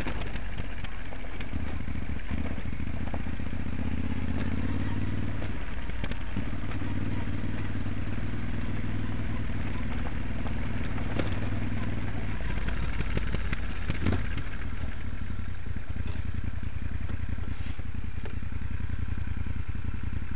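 Moto Guzzi Stelvio NTX's V-twin engine running steadily at low speed on a gravel track, heard from the rider's helmet. The engine note shifts lower about two-thirds of the way through, and there are a few sharp knocks.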